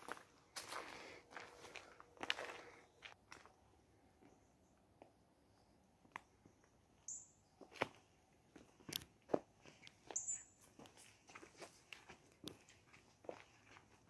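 Faint, irregular footsteps scuffing and crunching on a gravelly dirt woodland path.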